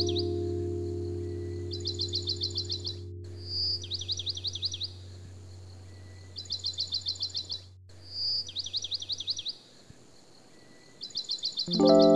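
Background ambient music, a held chord that fades away about nine and a half seconds in, over a bird song repeating every two to three seconds: a short high whistle followed by a quick trill of high notes. Electric piano music starts near the end.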